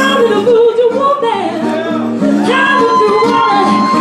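A woman singing live over a strummed acoustic guitar, holding one long high note through the second half.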